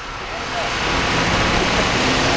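Road traffic: a vehicle passing on the street, its noise growing steadily louder.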